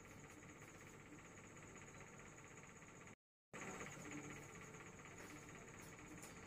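Near silence: faint room tone, cut to total silence for a moment about three seconds in.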